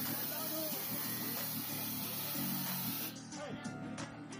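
Background music mixed with the chatter of a crowd and a loud steady hiss, which cuts off suddenly about three seconds in.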